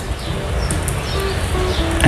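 Quiet background music, steady and without speech over it.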